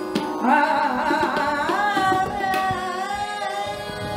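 Woman singing a long, ornamented phrase in Hindustani semi-classical style, entering about half a second in, over a steady drone, with tabla strokes accompanying her.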